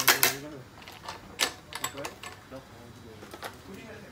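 Sharp clicks and knocks from a badminton stringing machine as its frame mounts are released and the freshly strung racket is taken off: a loud cluster of clicks at the start, then single scattered clicks.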